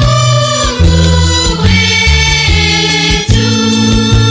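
Youth choir singing a gospel song together over an instrumental backing with a moving bass line and a regular beat.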